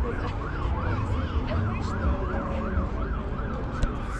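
Emergency-vehicle siren in its fast yelp mode, its pitch sweeping up and down about three times a second without a break.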